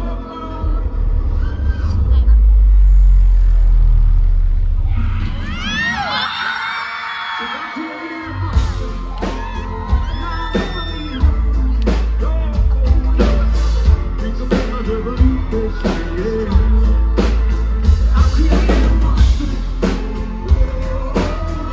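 Live rock band with a male lead singer, loud and heavy in the bass. About five seconds in, the bass drops out for a few seconds under a burst of crowd whoops and cheers. Then the drums and bass come back in with a steady beat.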